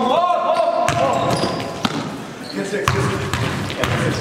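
Live gym sound of a basketball game: a ball bouncing on a hardwood floor, with sharp impacts about a second in and near three seconds, among players' voices, all echoing in a large hall.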